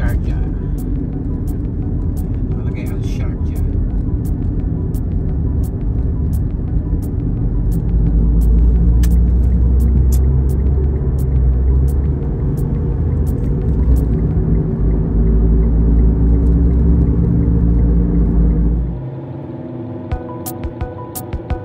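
Car interior road and engine rumble while driving, a steady low drone that grows louder about eight seconds in as the car gets up to highway speed, then drops away sharply near the end.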